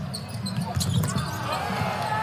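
A basketball being dribbled on a hardwood arena court, a handful of sharp bounces over the steady murmur of the arena crowd.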